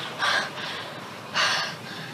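A young woman gasping for breath: two sharp, breathy gasps about a second apart.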